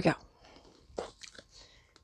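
A spoken word, then a quiet room with a few faint, short handling sounds as a wrapped gift and its paper tag are held up.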